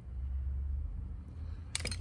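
Low steady rumble, then a quick cluster of clicks near the end as small hand tools are set down on a pegboard workbench.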